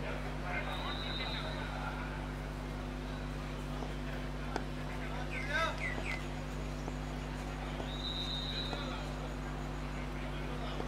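Outdoor ambience at a cricket ground between deliveries: faint distant voices over a steady low hum, with a brief warbling call about five and a half seconds in and two short thin high tones near the start and near the end.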